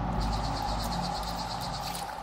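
Insect chirping in a fast, even trill of about ten pulses a second, cricket-like, over fading ambient music with low sustained tones.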